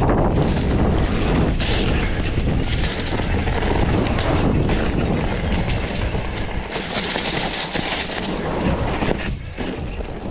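Mountain bike rolling fast over a leaf-strewn dirt singletrack: tyres running over dirt and dry leaves while the chain and frame rattle continuously over the bumps, with wind rumbling on the microphone.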